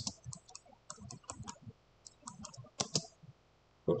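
Computer keyboard keys and mouse buttons clicking in quick, irregular taps, with a couple of short pauses.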